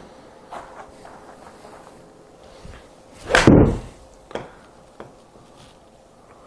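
Golf iron striking a ball off a hitting mat in a full swing: one loud impact about three and a half seconds in, followed by two faint knocks.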